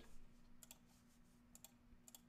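Faint computer mouse clicks: one a little past a third of the way in, then a quick pair near the end, over a faint steady hum.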